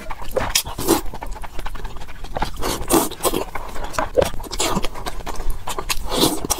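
Close-miked slurping and chewing of instant noodles: wet mouth sounds in a run of short, irregular bursts, with a bite into a boiled egg near the end.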